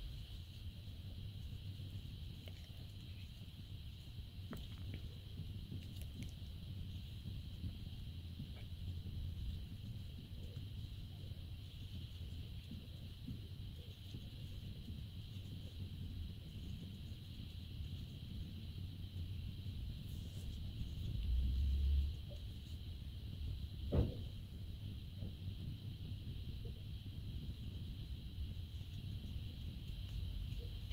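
Faint steady background hum and low rumble with a few soft ticks. There is a low bump about two-thirds of the way through and a short, sharper click a couple of seconds later.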